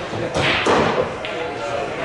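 A loud thump, a short cluster of knocks about half a second in, over people talking in the background.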